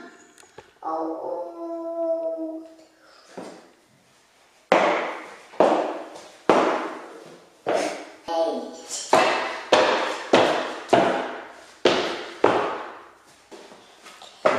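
A small child's voice in a drawn-out sung sound, then a run of sharp thuds on a wood floor, about one and a half a second for several seconds, as a toddler bangs down on the floor by his sneakers.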